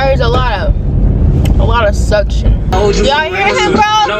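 A woman's voice singing in long, bending notes inside a moving car, over steady low road and engine rumble. A little under three seconds in, the rumble drops away and a song with a sung vocal and steady instrumental notes takes over.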